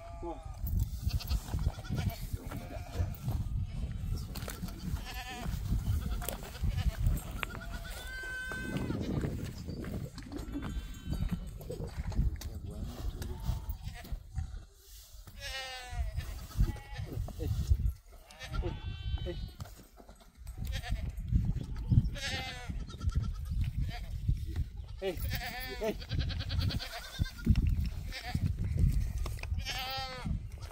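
A flock of goats and sheep bleating, many separate quavering calls one after another, over a steady low rumble.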